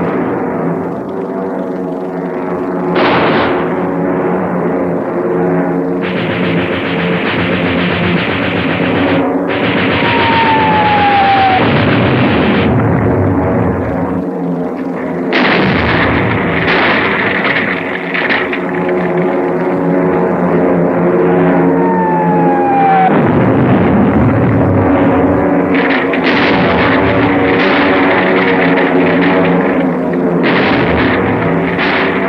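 Dramatic film score playing throughout. Twice a falling whistle of a dropping bomb cuts in, about a third of the way through and again about two-thirds through, each followed by the noise of explosions. Explosion noise builds again near the end.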